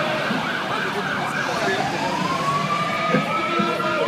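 A siren winding slowly up in pitch from about one and a half seconds in, heard over the noise of a marching crowd.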